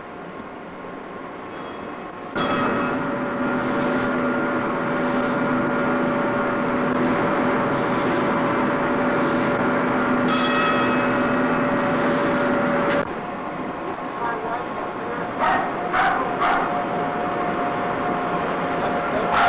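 A steamship's steam whistle blowing one long blast of about ten seconds, starting suddenly a couple of seconds in and cutting off sharply. A few short sharp sounds follow near the end.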